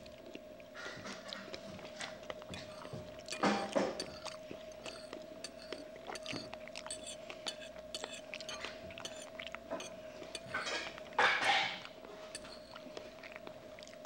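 A person chewing food close to a clip-on microphone, with small clicks of cutlery on plates throughout and two louder spells of noise, about four seconds in and about eleven seconds in. A steady hum runs underneath.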